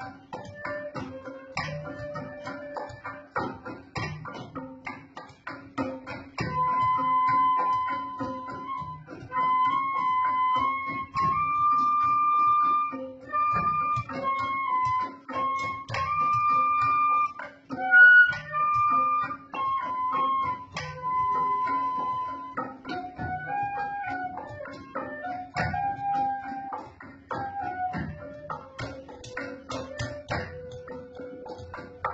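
Traditional Sundanese ensemble music: a bamboo flute (suling) plays long held notes in a stepwise melody, loudest through the middle, over a steady rhythmic accompaniment of struck bamboo and percussion strokes.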